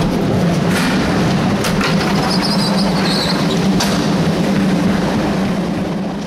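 Skateboard wheels rolling over concrete: a loud, steady rumble broken by a few sharp clacks, starting to fade just before the end.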